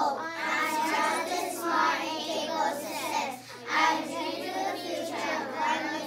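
A class of young children chanting a pledge together in unison.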